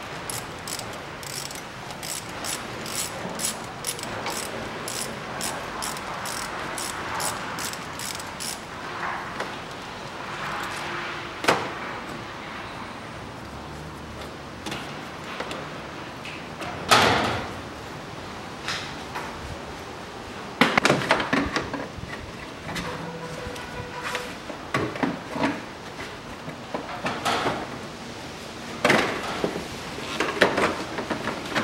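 A ratchet wrench clicking in a quick, even run of about two or three clicks a second for the first several seconds. Then scattered knocks, two louder thumps and a clatter of hard plastic as the radiator fan and its plastic shroud are handled and worked loose.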